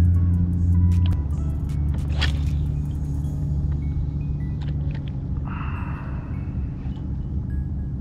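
Background music with low sustained bass notes that change about a second in, with a few short higher notes above.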